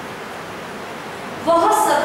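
Steady hiss of background noise, then a person's voice starts speaking about one and a half seconds in.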